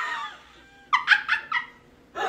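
A person's high-pitched laughter: a laugh trails off at the start, then about a second in come four short squeaky bursts, each falling in pitch.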